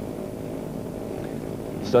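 Several 500cc single-cylinder speedway motorcycle engines running at the start gate before the tapes go up: a steady low drone of mixed engine notes.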